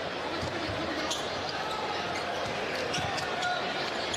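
Basketball game in an arena: a steady crowd murmur, with a ball being dribbled on the hardwood court and a few short squeaks.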